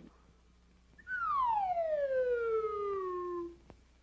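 A cartoon sound effect: a single long whistle-like tone starting about a second in and gliding steadily downward for over two seconds, followed by a short click near the end.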